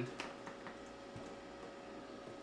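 A few faint, short clicks as cable plugs are handled at the back of a portable power station, over quiet room tone with a faint steady hum.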